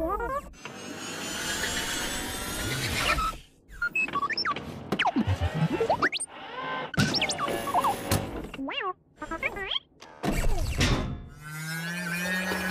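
Cartoon droid sound effects: R2-D2-style electronic beeps and whistles that slide up and down in short spells, with a few thunks and a boing. A low steady buzz comes in near the end.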